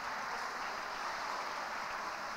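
Steady, even background noise of an indoor ice arena, a general crowd-and-room hum with no distinct events.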